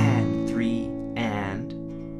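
Steel-string acoustic guitar with an A chord strummed sharply right at the start and left ringing, with a voice over it.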